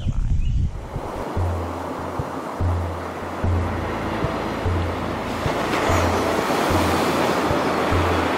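Ocean surf washing in over outro music with a slow, pulsing bass; the surf swells louder in the second half.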